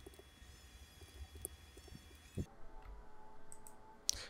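Faint, scattered clicks of a computer mouse over low room tone.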